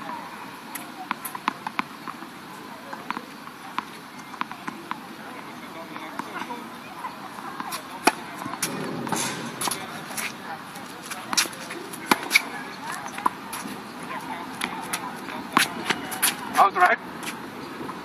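Tennis rally on an outdoor hard court: irregular sharp knocks of the ball off the rackets and the court, with shoe scuffs and squeaks from players running.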